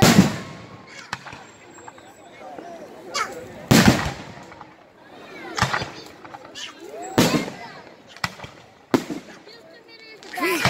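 Aerial fireworks bursting: a string of sharp bangs with a rumbling tail, about one every second or two, loudest at the very start and about four seconds in.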